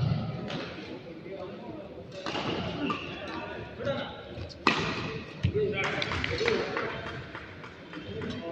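Sharp hits of badminton rackets on a shuttlecock during a rally, the loudest strike about halfway through, over a murmur of background voices.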